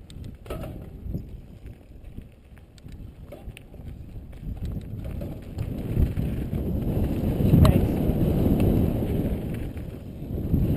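Wind rushing over a helmet-mounted camera's microphone, mixed with mountain-bike tyres rolling on a dirt trail and light rattles from the bike, growing louder about halfway through as the speed picks up. A sharp click stands out a little after that.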